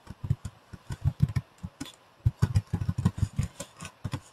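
Typing on a computer keyboard: quick, uneven keystrokes in two runs, with a short pause about a second and a half in.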